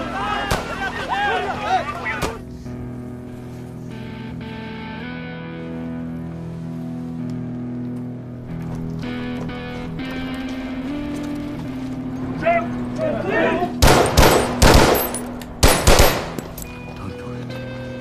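Sustained, slowly shifting orchestral score with a low drone, broken about fourteen seconds in by loud bursts of automatic gunfire, with a second volley about a second and a half later.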